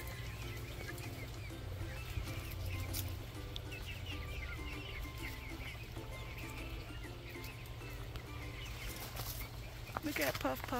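A flock of hens clucking softly in many short, low notes, with high little chirps from birds over them.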